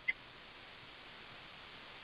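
Faint, steady hiss of a recorded phone line, with no one speaking.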